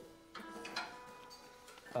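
Electric guitar being tuned between tunes: single notes plucked and left to ring faintly, a new note starting about a third of a second in and another just after, each fading slowly. The guitarist calls the guitar grumpy.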